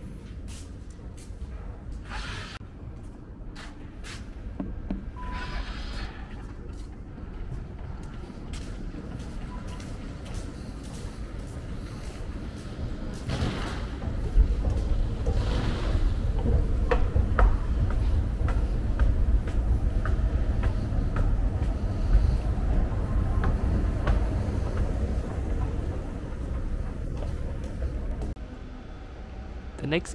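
Metro station ambience with scattered clicks and faint background noise, then a steady low rumble that sets in about halfway through and grows louder, with light ticks over it, until it drops just before the end.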